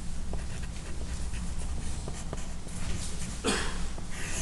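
Pencil writing on paper, its strokes scratching faintly over a steady low hum, with a short rush of noise, most likely a breath, about three and a half seconds in.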